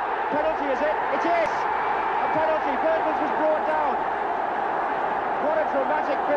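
Large football stadium crowd cheering and shouting, a steady dense roar of many voices.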